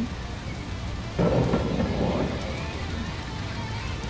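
Thunder rumbling over a steady rain-like hiss, with a louder rumble starting suddenly about a second in.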